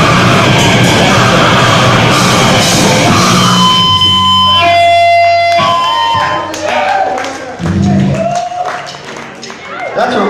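Live grindcore band playing loud, dense distorted guitars and drums; the song breaks off about three and a half seconds in. A few steady high tones ring on for about two seconds. Then voices call out over the quieter room.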